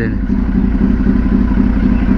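Kawasaki Z800's inline-four engine idling steadily, a continuous low, uneven rumble.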